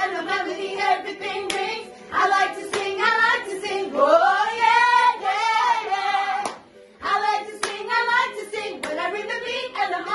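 Several women singing together without accompaniment in a vocal warm-up, with one long sung note that rises and falls in the middle and a short pause about seven seconds in. Sharp hand claps come in among the singing.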